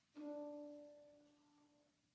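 Grand piano: a single note struck once, ringing and fading away over about two seconds.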